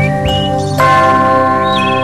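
Background music of sustained ringing, bell-like tones, with a new set of tones struck just under a second in and a few short high gliding notes above them.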